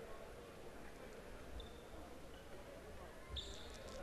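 Quiet indoor sports-hall ambience with faint, echoing distant voices of players and spectators, and a few soft thuds of a handball bouncing on the court.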